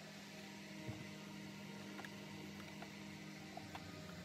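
A steady low hum, with a few faint small clicks as a screwdriver works at the wiring inside a plastic vacuum cleaner housing.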